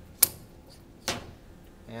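Two sharp metal clicks about a second apart, the first the louder: a metal tube-cutter adapter being slid onto the head of a powered tube-fitting tool and seated.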